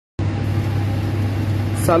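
Steady low machine hum, like a running motor, with a light hiss over it; a man begins speaking near the end.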